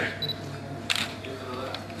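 A single sharp camera shutter click about a second in, over faint voices in the room.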